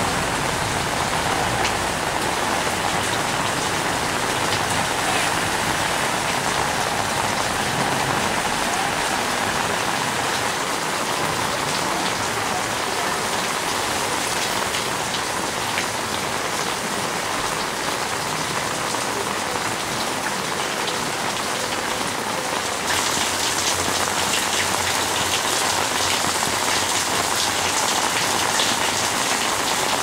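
Heavy rain falling steadily onto flooded pavement and standing water. About 23 seconds in it turns suddenly louder, with more high hiss.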